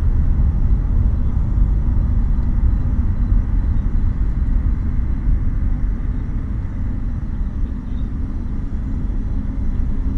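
Deep, steady rumble of a Falcon 9 rocket's first stage, its nine Merlin engines at full thrust during ascent, easing slightly in the second half.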